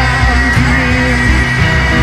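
Live rock band playing an instrumental passage with no vocals, guitar to the fore over a dense, steady low end.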